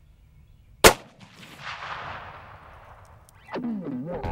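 A single sharp rifle shot about a second in, fired at a feral hog and missing low. A softer, fading noise follows for a couple of seconds.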